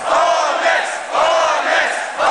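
Concert crowd chanting a shout in unison, loud, about once a second.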